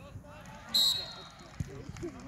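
A referee's whistle blown once: a short, shrill blast about three-quarters of a second in, fading quickly, over the chatter of spectators.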